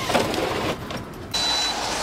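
Pleated fabric window blind being drawn along its runners, a soft rustling slide. A little past halfway it gives way abruptly to a louder steady hiss with a brief thin high whine.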